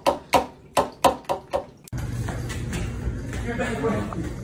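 A quick run of about seven sharp taps as a cat paws at a bathroom sink. It cuts off suddenly just before halfway, giving way to a steady low room hum.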